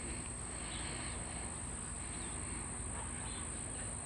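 Insects droning steadily at a high pitch over a faint outdoor background.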